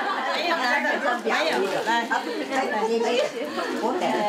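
Several people talking at once in a crowded room: overlapping chatter with no words clear enough to make out.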